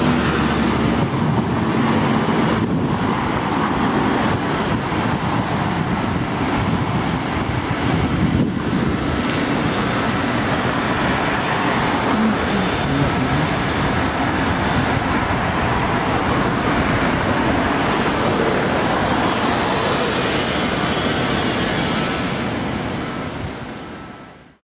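Steady city road traffic: cars and buses driving past on a multi-lane road, with a coach's engine close by at the start. The sound fades out near the end.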